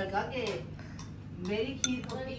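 A metal spoon clinking against a bowl, with one sharp clink near the end, while voices talk in the background.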